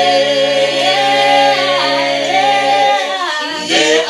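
A small group of men and women singing an amagwijo chant a cappella in harmony, holding long, steady notes. The voices break off briefly about three and a half seconds in and then come back in.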